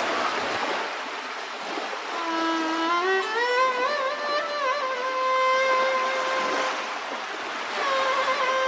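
Background music: a single melodic line with sliding notes and vibrato comes in about two seconds in and holds long notes, over a steady hiss.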